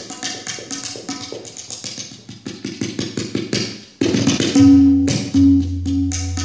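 Tabla drums playing a quick run of strokes in an instrumental kirtan passage. About four and a half seconds in, a loud, steady low note enters under the drumming and holds to the end.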